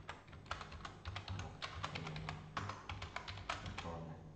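Rapid keystrokes on a computer keyboard as a file name is typed, with a short pause about two and a half seconds in.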